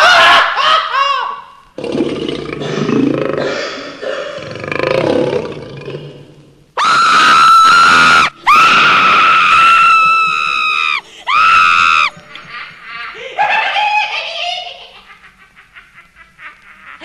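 A woman's voice laughing and shrieking in a comic drunken act. Short laughs come first, then three long, very high held shrieks in the middle, then a quieter voice fading out.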